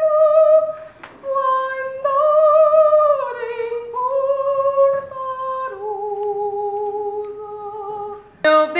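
A young woman singing unaccompanied, holding long notes with vibrato. After a short break about a second in, her line steps down in pitch and settles on a long, lower held note near the end.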